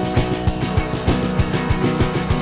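Live band playing an instrumental passage: a drum kit keeping a fast, steady beat with cymbals, under sustained chords from an electric keyboard and an electric guitar.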